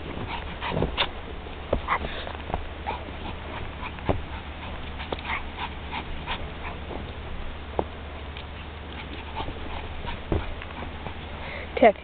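Irregular crunching of boots and a small dog's paws in deep snow, with faint sounds from the dog.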